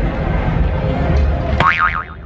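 A cartoon-style 'boing' sound effect with a rapidly wobbling pitch near the end, marking the inflated tube balloon bouncing off the pavement, over steady street and crowd noise.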